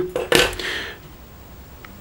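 A flat stainless-steel card multi-tool clinks once against the wooden tabletop or the second card tool about a third of a second in, with a short metallic ring, followed by a faint tick near the end.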